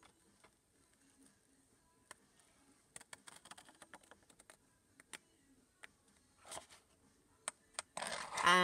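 Faint scissors snipping through white cardstock: scattered short clicks, a cluster of them in the middle and a few single snips toward the end.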